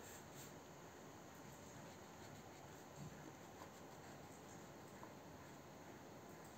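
Near silence: faint scratching of a wax crayon being rubbed back and forth on paper, over steady background hiss.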